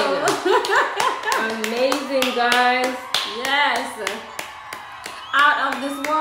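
Hands clapping, a few uneven claps a second for about four seconds, over a voice with long sliding notes.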